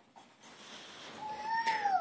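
A dog giving a short whine that falls in pitch near the end, after a faint, quiet stretch.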